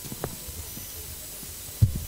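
Low, steady background hiss in a gap between speech, with a short low thump near the end.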